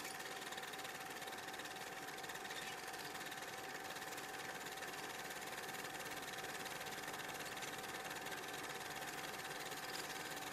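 Steady, even hiss with a faint constant high whine running through it, unchanging throughout: background noise on the audio track.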